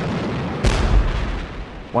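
A steady noisy rumble of gunfire, broken about half a second in by one sudden heavy artillery shell explosion whose deep boom dies away over about a second.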